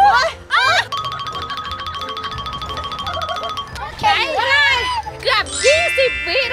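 Edited-in background music with springy cartoon 'boing' sound effects. In the middle a steady ringing tone with fast even ticking runs for about three seconds, and a held chime-like chord comes in near the end.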